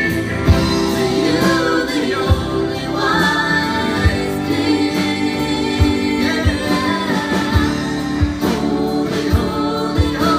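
Live gospel worship band: several voices singing together over keyboard, electric guitar and drums, with a steady drum beat.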